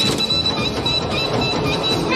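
A carnival ride running with a loud, steady rattling clatter, with short high tones repeating over it.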